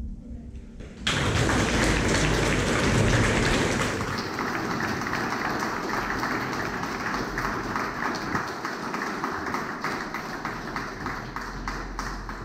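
The last piano chord dies away, then audience applause breaks out suddenly about a second in. The clapping is loudest for the first few seconds, carries on steadily, and thins out near the end.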